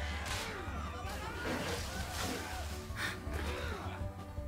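Cartoon soundtrack: background music with a steady low bass line, under characters' strained grunts and gasps as they fight, with a few sharp hits.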